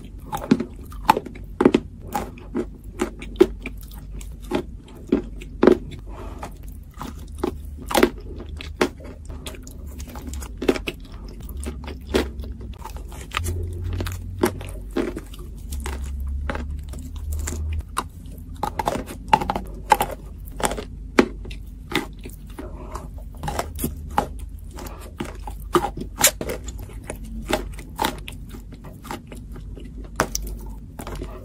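Close-up chewing and crunching of edible Turkestan clay in the mouth: a continuous run of irregular, sharp crunches as the clay is bitten and ground between the teeth.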